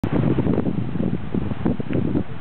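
Wind buffeting the microphone: a loud, uneven, gusting rumble.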